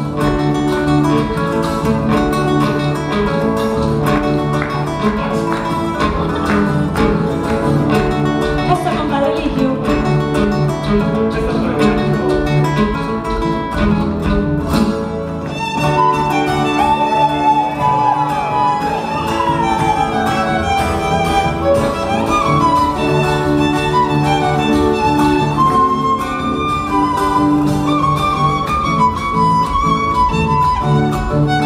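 Instrumental break of a sanjuanero played live by violin, tiple and acoustic guitar: the plucked and strummed strings keep the dance rhythm under a violin melody. About fifteen seconds in the music briefly thins, then the violin comes back with a new melody line that has sliding notes.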